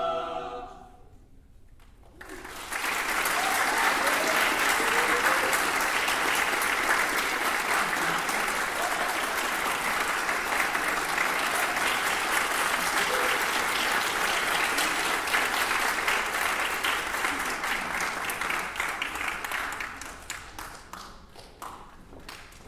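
A choir's last chord dies away, and after a short pause an audience applauds, the clapping thinning to scattered single claps near the end.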